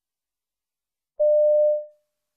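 Silence, then about a second in a single steady electronic beep, a little over half a second long, that fades out. It is the cue tone that marks the start of each piece in a listening-test recording.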